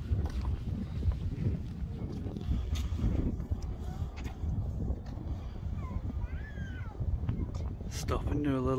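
Wind rumbling on the microphone while walking on a timber bridge footway, with scattered knocks of footsteps and handling. A few faint gliding calls come a little after halfway.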